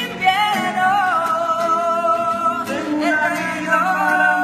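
Music: a song with a voice holding long, gently wavering melody notes over a steady instrumental accompaniment.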